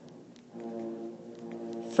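A steady, unwavering droning tone with even overtones comes in about half a second in and holds level, with a few faint ticks over it.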